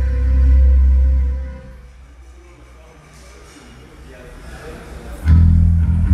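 Amplified live band with bass and electric guitar: a loud, low held chord rings and dies away over the first two seconds, then after a quieter gap the band comes back in sharply with heavy bass chords about five seconds in.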